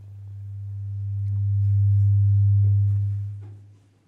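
A steady low electronic hum, one pitch near 100 Hz, coming through the hall's sound system. It swells over the first two seconds to loud, holds, then fades away near the end.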